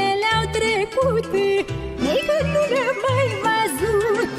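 Romanian folk music with band accompaniment: a heavily ornamented, wavering melody line over a steady pulsing bass rhythm.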